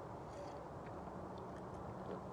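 Quiet outdoor background with a faint steady low hum joining about a second in; no distinct sound stands out.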